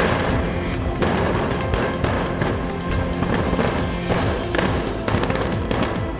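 Electronic background music with a steady beat, with a rock blast in the tunnel face going off as a sudden boom at the very start, followed by several seconds of noise.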